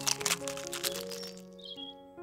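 A quick run of cracking crackles in the first second, an eggshell-cracking sound effect, over light background music with steady notes.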